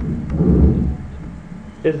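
A low rumble on the microphone lasting about half a second, a little after the start, followed by the start of a spoken word near the end.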